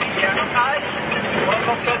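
A voice singing over backing music.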